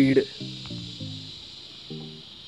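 Soft instrumental background music, a few short held notes in small groups, over a steady high hiss; the last syllable of a spoken word is heard at the very start.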